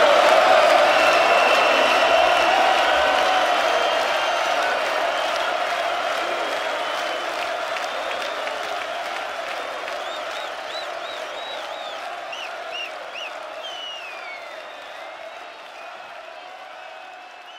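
Large stadium crowd cheering and applauding, with a run of shrill rising-and-falling whistles about ten seconds in; the whole sound fades steadily away.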